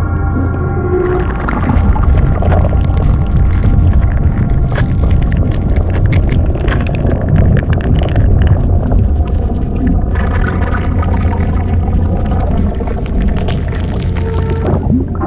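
Horror-film sound design: a loud, deep rumble under droning, moaning tones. From about a second in, dense crackling and fizzing runs over it.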